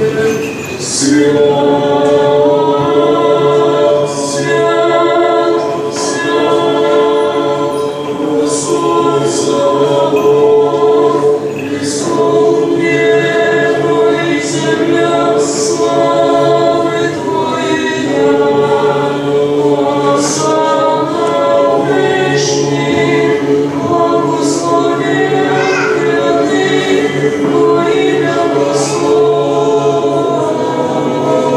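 Church choir chanting Orthodox Byzantine chant unaccompanied: a continuous melodic line sung over a steady held low drone.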